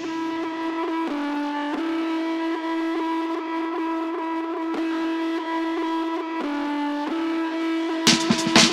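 Melodic intro of a hip-hop instrumental beat: an effected electric guitar holds long, sustained notes with no drums. The notes change about a second in, again shortly after, and once more near the end.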